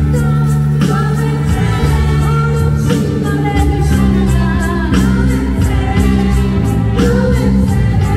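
Live band music: a singer over low bass notes and a steady drum beat from an electronic drum kit played through an amplifier.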